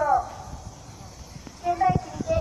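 People's voices: one falls in pitch at the start, and more people talk near the end. A quieter stretch lies between them, and a single low knock comes just before the end.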